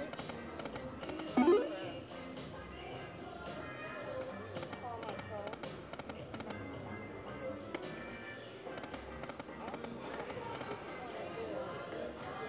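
Buffalo Link video slot machine spinning its reels over and over, its spin sounds and music jingles over a busy casino background of other machines and chatter. A brief, loud rising sound comes about a second and a half in.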